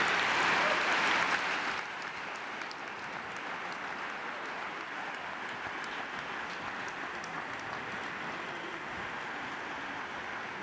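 Audience applauding, loud for about the first two seconds, then dropping to a softer, steady patter of clapping.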